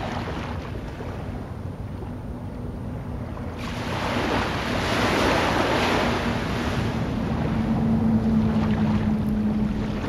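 Small waves washing up on a sandy beach, with wind on the microphone; a wave comes in louder about three and a half seconds in. A low steady hum runs underneath, stronger in the second half.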